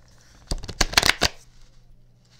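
A deck of tarot cards being shuffled by hand: a quick run of sharp riffling flicks starting about half a second in and lasting under a second.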